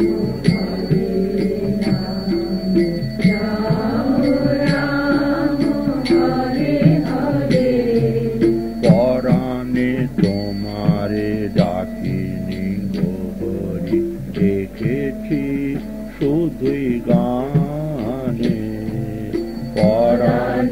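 Kirtan music: a devotional melody with instrumental accompaniment over a steady percussive beat.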